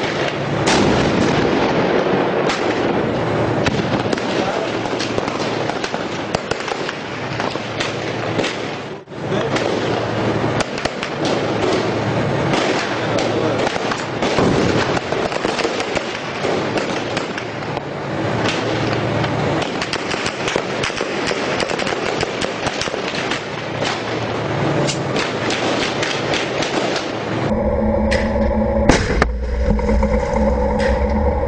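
Dense, continuous small-arms and machine-gun fire, shots crackling in rapid overlapping volleys, with a brief break about nine seconds in. Near the end, a heavy tank engine running takes over.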